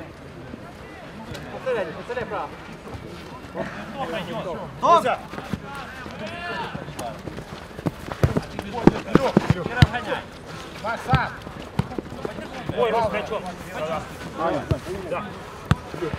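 Indistinct shouts of footballers calling across the pitch, with a run of sharp thuds from a football being kicked about eight to ten seconds in and a few more later.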